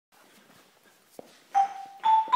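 Low room noise with a soft click about a second in, then near the end a single mallet-struck bar note on a keyboard percussion instrument rings out loudly and sustains: the first note of the piece.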